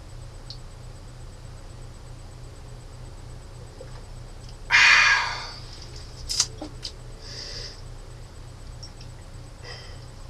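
A man lets out a loud sigh about halfway through, after a swallow of beer. A few sharp knocks follow soon after, over a steady low hum.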